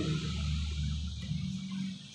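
Low steady hum under faint room tone, with no speech.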